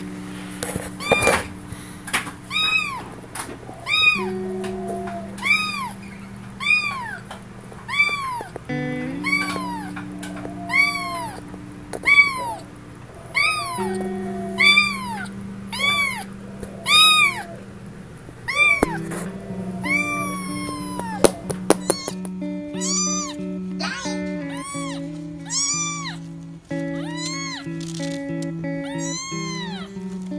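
A kitten meowing again and again, about one high-pitched meow a second, each one rising and then falling in pitch. Background music with long held notes plays underneath, and after the middle the meows come fainter and less regularly.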